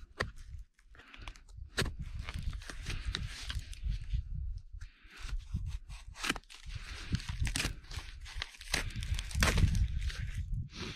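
A knife slicing and tearing through a cardboard parcel wrapped in packing tape: irregular crackling rips, scrapes and crinkles of tape and cardboard, the loudest tearing coming near the end as the cardboard is pulled open.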